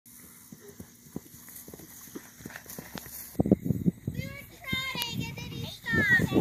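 Faint, irregular hoofbeats of a horse moving on grass. About three and a half seconds in, a louder low rumbling noise starts, followed by a high-pitched voice.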